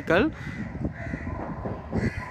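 The tail of a spoken word, then a bird calling over faint outdoor background noise.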